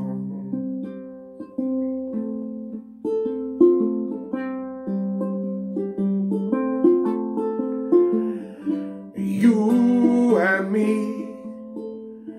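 Five-string Baton Rouge ukulele picked note by note in an instrumental passage, a melody line of plucked notes stepping up and down, each ringing and dying away before the next.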